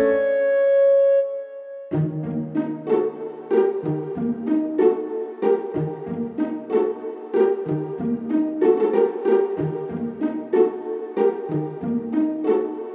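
Instrumental background music: a held chord ends about two seconds in, and a new piece starts with a steady run of short, evenly paced notes.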